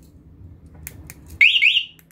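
Motorcycle alarm siren giving two quick rising chirps about one and a half seconds in. This is the alarm's confirmation signal as the MP 1-way remote is pressed to activate the keyless knob.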